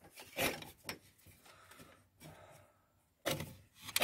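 Faint, scattered rustles and light knocks of hands handling loose wires and a switch panel. One knock comes about half a second in, and a few more come near the end.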